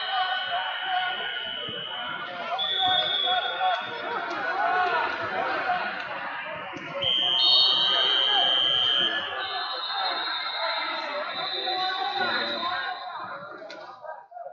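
Several long, steady high-pitched buzzer tones at slightly different pitches, overlapping one another from mat-side timers, the loudest starting about seven seconds in as the bout's first-period clock runs out. Under them, the constant chatter of a crowd in a large hall.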